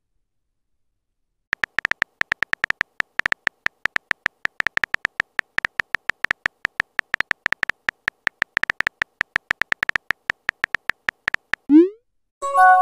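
Simulated phone-keyboard typing clicks from a texting-story app: a fast run of short, high-pitched electronic ticks, about six a second, starting a second or so in. A quick rising swoosh comes near the end.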